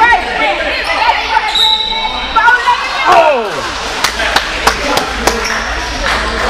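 Basketball bouncing on a gym floor, with a run of sharp thuds about three a second near the end, under scattered shouting voices echoing in a large hall.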